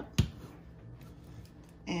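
A single sharp click, loud and brief, about a fifth of a second in, followed by quiet room tone.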